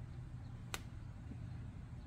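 Quiet low hum of room tone, with one sharp little click about three-quarters of a second in.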